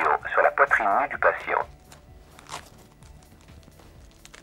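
A ZOLL AED Plus defibrillator gives a recorded voice prompt through its small loudspeaker for about the first second and a half. It is repeating its instruction because the electrodes are not yet applied. Then come soft rustling and a click as the electrode pad is pressed onto the manikin.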